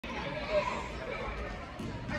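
Background chatter: several people's voices talking over one another.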